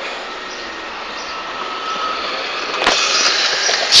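Steady road and traffic noise from a moving vehicle on a city street, getting louder about three seconds in, with a single knock at that point.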